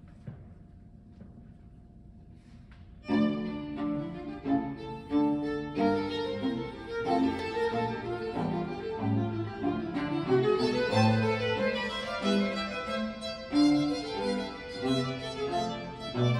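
Quiet room tone for about three seconds, then a small baroque string ensemble, violins and cello, starts playing all at once and carries on with a lively, busy texture.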